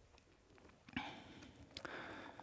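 A chair being shifted and handled: a light knock about a second in, then soft breathy rustling with a couple of small clicks near the end.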